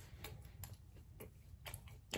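Quiet chewing of a chicken nugget with the mouth closed: a few faint, irregular mouth clicks over a low steady room hum.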